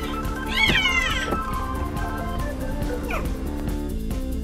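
A cat meowing over background music: one loud call about half a second in that rises and then falls, and a shorter falling call near the end.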